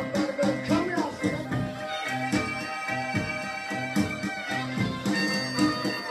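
Blues harmonica in F wailing on held draw notes over a steady, repeating rhythm backing: the first note wavers with hand vibrato, then steadier held notes from about two seconds in, a lick that builds the tension leading into the four chord.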